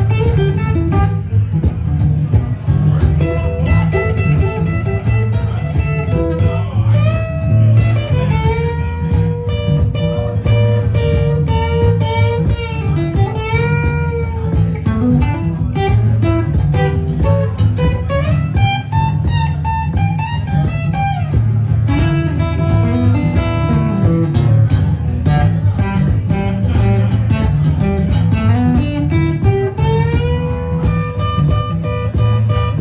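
Cole Clark acoustic guitar played solo in a bluesy lead, with many string bends gliding up and back down between picked runs, over steady low notes.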